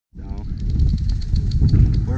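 Loud, steady low-pitched noise starts just after the beginning, with a brief voice near the start and a faint rapid ticking, about seven ticks a second.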